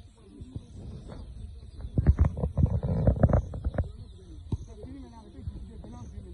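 Distant voices of players calling across an outdoor football pitch, over a steady high-pitched insect drone with chirps repeating about twice a second. About two to four seconds in, a louder stretch of rumble and sharp knocks.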